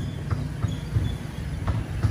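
Steady low rumble of a motor vehicle running, with a few faint short knocks.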